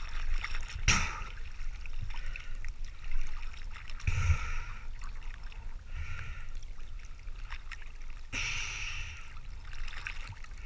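Sea water sloshing and splashing against a camera held at the surface in a light chop, with a steady low rumble and several separate splashes of under a second each.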